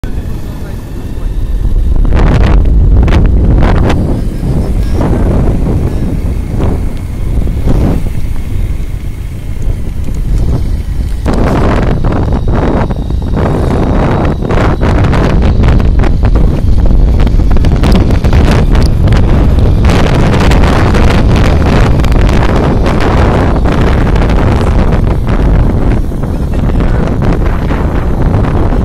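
Wind buffeting the microphone of a camera on a moving motorbike, in loud irregular gusts, with the bike's engine and road noise running underneath.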